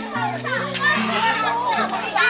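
Children and women shouting and laughing together in a lively group, over background music with slow sustained low notes.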